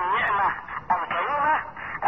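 Speech only: a man talking over a telephone line, the voice thin and cut off above the phone band.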